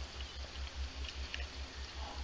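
Quiet room tone: a low hum that pulses evenly, about eight times a second, with a couple of faint ticks.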